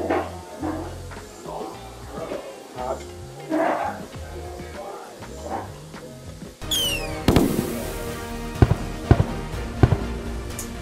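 Background music, then about seven seconds in a fireworks sound effect: a quick falling whistle, a burst, and several sharp crackling pops near the end.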